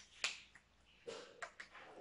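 One sharp plastic click about a quarter second in, a felt-tip whiteboard marker's cap being snapped shut, followed by a few faint, softer clicks as the markers are handled.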